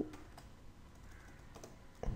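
Faint computer keyboard typing: a few scattered keystrokes.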